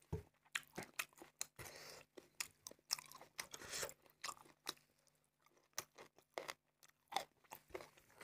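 Close-miked chewing of rice with spicy chicken and pork belly curry: irregular wet mouth clicks and short crunches, thinning out for a moment a little past the middle.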